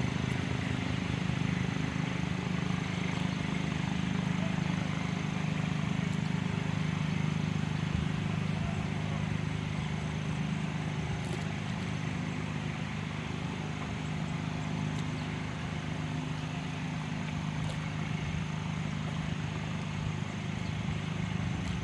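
An engine runs at a steady low hum throughout, without revving or changing pitch.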